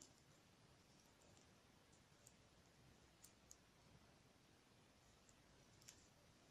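Near silence with a few faint, sparse clicks of metal knitting needles as the last stitches are bound off.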